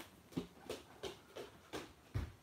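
Faint, quick footsteps of a person hurrying away across the floor, about three steps a second.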